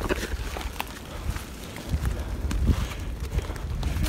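Footsteps on leaf litter and twigs along a forest trail, coming as irregular short clicks, over a low rumble on the microphone.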